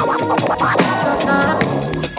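Vinyl record scratching on a Numark PT01 Scratch portable turntable over a beat: quick back-and-forth scratches cut in rhythm with the drums.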